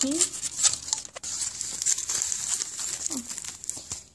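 Foil wrapper of a Kinder Surprise chocolate egg being peeled off and crumpled by hand: a continuous crinkling full of sharp crackles, stopping just before the end.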